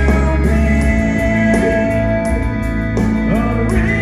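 A rock band playing live with electric guitars, bass and drums, the lead singer singing over them, heard from within the audience.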